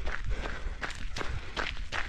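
A runner's footsteps crunching on a gravel trail, a steady running rhythm of about three strides a second.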